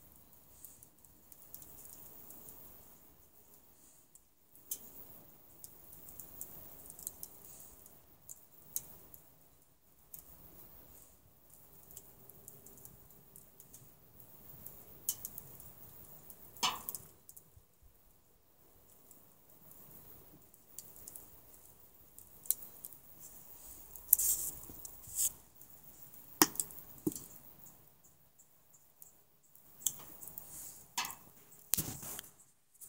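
Wood-and-charcoal fire crackling under a pot of boiling water, with irregular pops and a few louder snaps.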